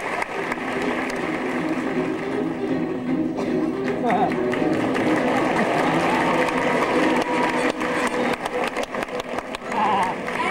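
Live theatre sound: orchestral stage music under audience murmur, with a held note about six seconds in.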